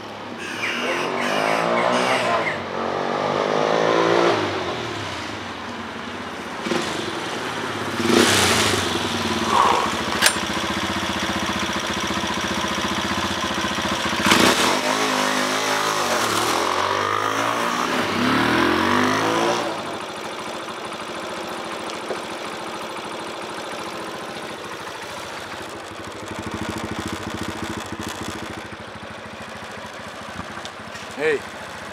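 Sport motorcycle engine revving up and down as it rides up and comes to a stop, in two spells of rising and falling pitch, with a few sudden loud hits in the middle. In the second half the engine runs more steadily and quieter, as if idling.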